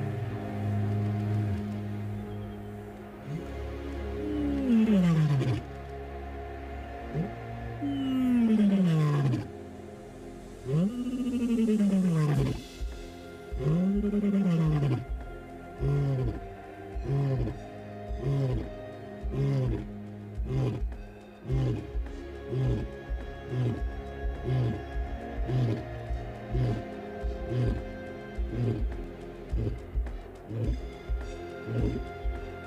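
Male lion roaring: four long moaning roars that rise and fall in pitch, then a run of short grunts about one a second that grow weaker. Background music plays underneath.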